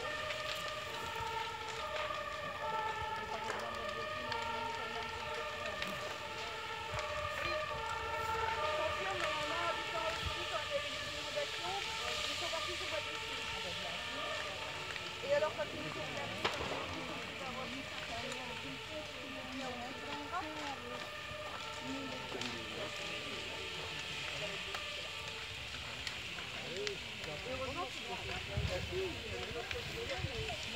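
Two-tone emergency-vehicle siren, alternating between a high and a low pitch, fading out after about ten seconds. Faint voices and crackling run underneath.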